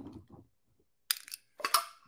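Metal screw lid of a glass honey jar being twisted open: a few short clicks and scrapes, one near the start and several more from about a second in.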